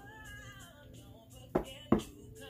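Two sharp knocks close together near the end as a deck of cards is handled and knocked against a surface, over soft background music.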